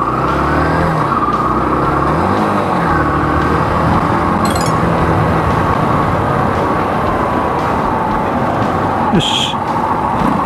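Motorcycle engine running while riding, its pitch rising and falling as it slows and pulls through a right turn at an intersection.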